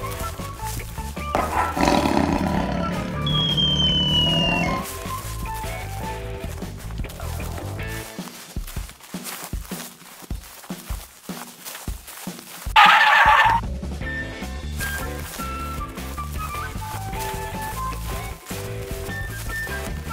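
Background music for an animated cartoon. A loud sound effect starts about a second and a half in and lasts about three seconds, and there is a short loud burst about halfway through.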